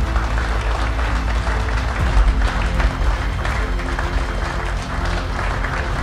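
Audience applause over background music with a steady low bass line.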